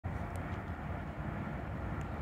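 Steady low background rumble of outdoor noise, with no distinct event in it.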